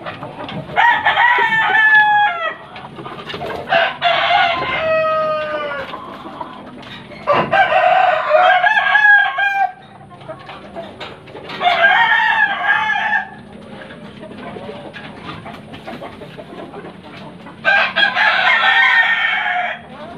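Roosters crowing: five crows of one to two seconds each, spaced a few seconds apart, with quieter stretches between.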